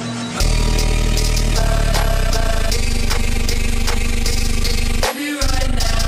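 Loud, heavily bass-boosted music drop that kicks in suddenly about half a second in, with a brief break and a short rising sweep about five seconds in before the bass returns.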